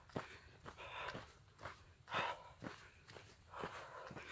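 Footsteps on a dry dirt mountain trail, faint, about two steps a second.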